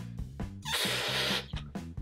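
A red 260 modelling balloon being inflated by mouth: one breathy rush of air, lasting most of a second near the middle, over steady background music.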